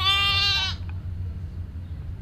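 A lamb bleating once: a single high, wavering call lasting under a second, over a steady low background hum.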